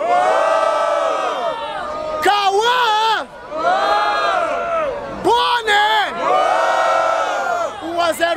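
Crowd of young people shouting and cheering in long, drawn-out yells, in several waves with short breaks between them. It is a vote by noise for one of the rappers in a freestyle battle.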